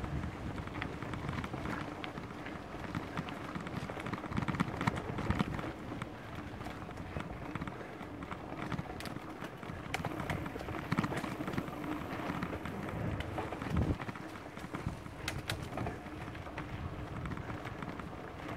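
A mountain bike rolling over a rough dirt trail: a constant irregular rattle and clatter from the bike and tyres crunching over leaves and roots, with a low rumble of wind on the microphone.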